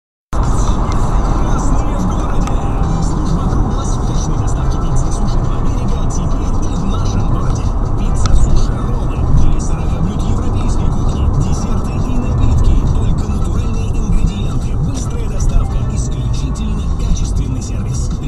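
Inside a moving car: steady road and engine noise, with a car radio playing music and voices.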